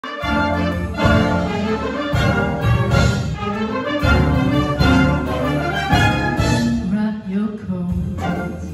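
Concert wind band of brass and saxophones playing an instrumental passage, with a strong bass line and accented chords about once a second.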